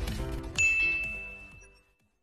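A single bright electronic bell ding, as used for a subscribe-and-notification-bell animation. It strikes about half a second in and rings out, fading away over about a second and a half, while the tail of the outro music dies down.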